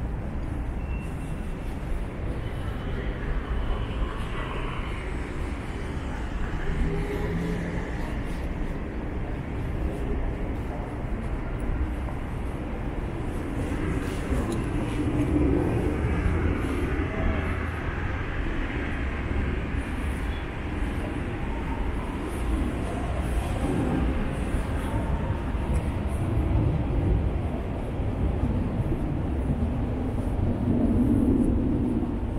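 Steady city street ambience: a low hum of distant traffic, with faint voices now and then.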